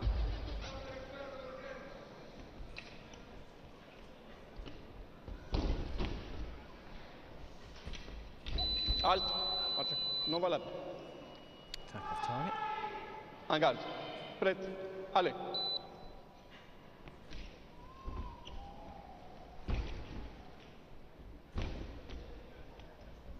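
Fencing arena sound: voices calling out in bursts, sharp thuds of fencers' feet on the metal piste, and a steady high electronic beep from the scoring apparatus held about two seconds near the middle, with a shorter beep later.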